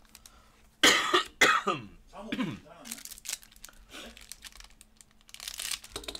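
A man coughing twice in quick succession about a second in, followed by a weaker throat sound. Near the end comes the crinkling of a foil trading-card pack being handled.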